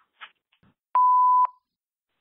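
Voicemail system beep between recorded messages: a single steady mid-pitched tone about half a second long, with a click at its start and end, marking the start of the next message.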